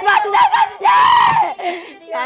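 A woman crying out in grief as she speaks: wailing, broken words, with a high drawn-out cry just before halfway through that trails off near the end.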